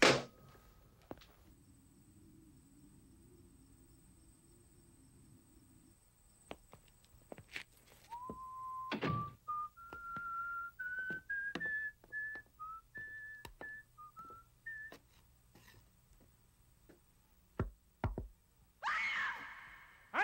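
A telephone handset thunks down hard onto its cradle, the loudest sound here. Later a man whistles a short run of notes that step upward in pitch, among scattered clicks and knocks.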